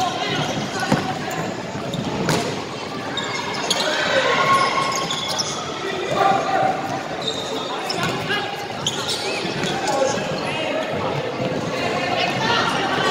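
Basketball bouncing on a hardwood gym court during play, sharp knocks every so often, with players and onlookers calling out in the large hall.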